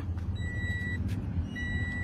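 2018 Toyota Vios door-open warning chime beeping twice, a steady high electronic tone about half a second long, repeating a little over once a second. It is the car's warning that a door is open.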